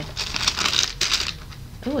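Tissue-paper wrapping rustling and crinkling as it is pulled open, in a quick flurry over the first second or so.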